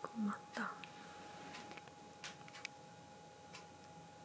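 A person's soft, murmured voice: two short sounds in the first second. Faint scattered ticks follow, over a faint steady tone.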